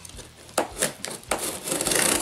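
Utility knife cutting through the packing tape on a cardboard box: a few short scraping strokes, then a longer cut near the end.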